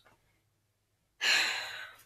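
A person sighing: one breathy exhale into the microphone a little over a second in, loudest at its start and fading away within under a second.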